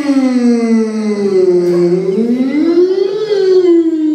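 A man's loud, drawn-out theatrical yawn, voiced without a break. Its pitch slides down, rises again about two seconds in, and falls back near the end.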